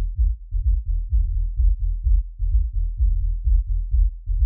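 House kick drum and bass loop played through a low-pass filter so that only the deep sub and bass end is heard, a steady repeating dance pulse.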